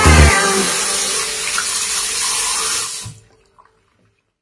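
Water running steadily from a bathroom tap into a ceramic sink, with hands being rinsed under the stream. The sound cuts off suddenly about three seconds in.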